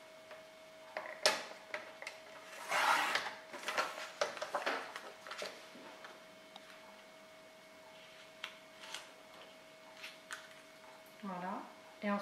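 A paper trimmer cutting a sheet of patterned scrapbook paper. There is a sharp click, then about a second later a short scraping swish as the blade runs through the paper, followed by small clicks and paper rustles as the cut piece is handled.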